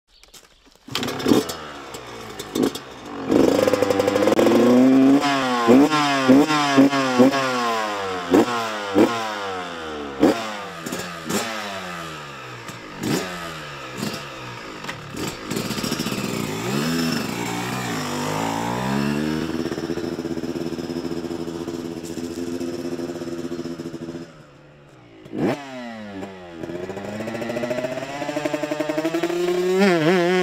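Small two-stroke motocross bike engine revving hard in a string of quick rising bursts, then holding a steadier pitch. Near the end it cuts out briefly, blips once and revs up again.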